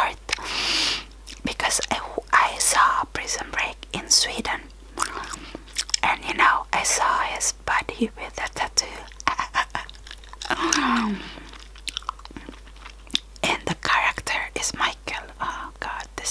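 Close-miked gum chewing: wet mouth clicks and smacks in quick succession, broken by stretches of soft whispering.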